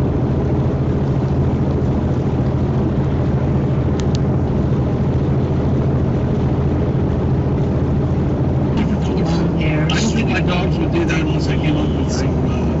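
Steady low drone of road and engine noise heard inside a moving vehicle's cab. A brief click comes about four seconds in, and irregular short ticks and hisses fill the last few seconds.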